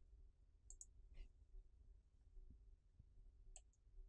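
Near silence with a few faint, short clicks from working a computer: a pair about a second in and another near the end.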